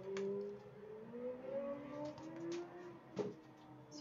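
Faint hum of a distant engine, its pitch slowly rising, with a couple of light clicks.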